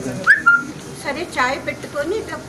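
A brief high whistle-like sound: a quick rising chirp followed by a short steady note.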